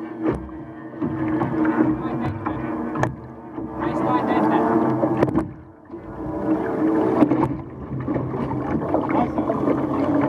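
Outboard engine of an OSY-400 race boat running at low speed: a steady pitched hum that swells and fades in loudness, dropping briefly about six seconds in.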